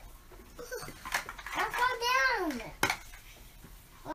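Large plastic toy building blocks clacking and knocking together, with two sharp knocks standing out. In the middle a small child gives one wordless call that rises and falls in pitch.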